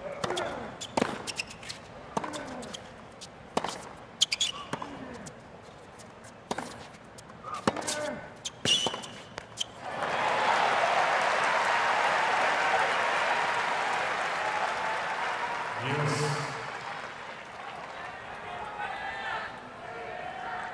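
A tennis rally: sharp racket strikes on the ball and bounces about a second apart, with players' grunts, for about ten seconds. Then the crowd cheers and applauds as the point ends, slowly dying down.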